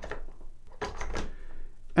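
A few sharp clicks and knocks from a Real Avid Master Vise being handled, with its ball-mount clamp worked by hand. Most of the clicks come about a second in.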